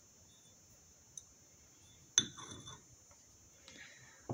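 Porcelain Turkish coffee saucer clinking once against its cup about two seconds in, with a small tick before it and a brief rustle of handling after.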